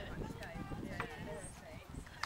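Hoofbeats of a horse cantering close by on a soft arena surface, dull irregular thuds.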